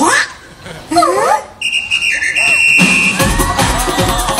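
Show soundtrack over the theatre's sound system: a brief high voice exclaiming, then a bright steady electronic tone held for about a second, and about three seconds in upbeat dance music starts with a heavy bass beat.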